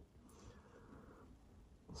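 Near silence: faint room tone, with a soft click right at the start.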